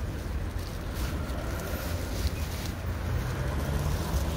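Wind buffeting the microphone: a low, uneven rumble that swells a little toward the end.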